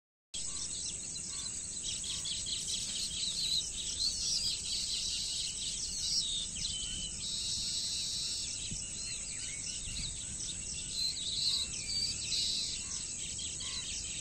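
A colony of baya weavers chattering, with many overlapping short chirps and trills, over a steady high-pitched insect drone.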